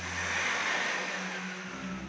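A rushing whoosh of noise that swells and then fades over about two seconds, with a faint falling tone through it, over a low sustained music drone that drops out near the end.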